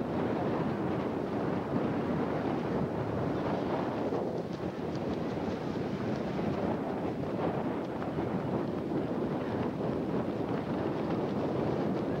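Steady wind buffeting the camcorder's microphone, with surf washing in beneath it.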